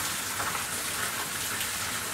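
Steady, even hiss of outdoor background noise.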